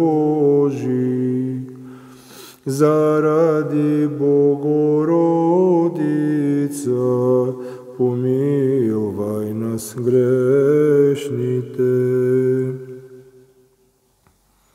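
A single man's voice chanting psalm text in an Orthodox recitation style, holding each phrase on a few steady notes with short breaths between phrases. The voice fades out about a second before the end.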